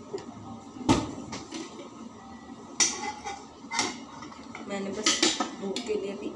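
A spoon clinking and tapping against a frying pan and a small steel bowl: one sharp knock about a second in, then several lighter clinks.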